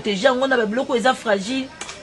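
A woman talking, with a short sharp click near the end.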